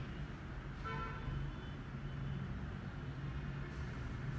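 Quiet room tone with a steady low hum, and a brief faint pitched tone about a second in.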